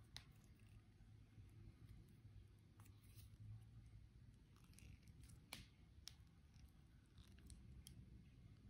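Faint, scattered clicks and ticks of chain nose pliers gripping and working thin jewelry wire as it is wrapped by hand, over quiet room tone. The sharpest click comes about five and a half seconds in.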